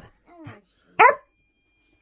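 A small dog gives one short, sharp bark about a second in, with a fainter short sound just before it.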